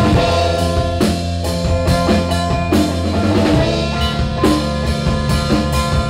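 A rock band playing an instrumental passage, with the drum kit prominent over sustained guitar and bass notes, recorded live at a rehearsal through a cellphone's microphone.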